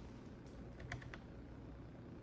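A few soft clicks, four of them, in the first half, over a faint steady low hum of room tone.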